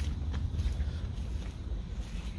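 Low wind rumble on the microphone, with faint footsteps on grass and dirt.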